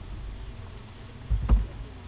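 Computer keyboard keystrokes: a few key presses about a second and a half in, the last a sharp click, over a steady low hum.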